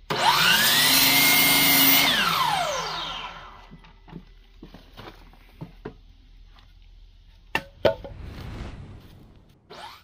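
DeWalt mitre saw started up with a rising whine and run through a cut in a timber beam for about two seconds. It is then switched off, and the blade winds down with a falling whine. After that come knocks of the cut wood being handled and set on the bench, with two sharp knocks near the end.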